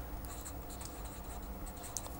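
Marker pen writing on paper: faint scratching strokes as a word is written.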